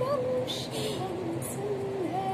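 A woman singing solo in Hindi, holding long notes that slide up and down between short sung syllables.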